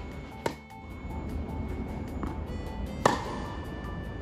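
Background music, over which a tennis racket strikes the ball with a sharp crack about half a second in on a high forehand. A second, louder sharp ball impact comes about three seconds in.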